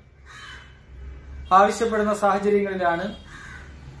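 A man speaking Malayalam, with a faint, harsh bird call in the background during the first second, before he speaks.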